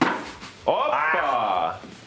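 A cloth bean bag lands with a thud on a wooden cornhole board, and the sound dies away over about half a second. Then a person gives a drawn-out exclamation of about a second, rising and then falling in pitch.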